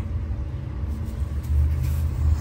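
Low, uneven rumble.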